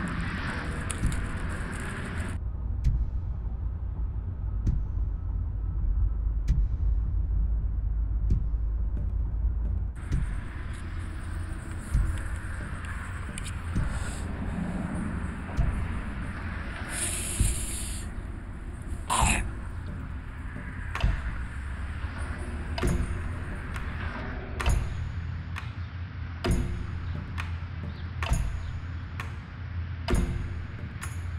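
A steady low rumble with scattered small clicks; about seventeen seconds in, a short sharp sniff as a line of cocaine is snorted off a plate. Near the end, a run of evenly spaced ticks.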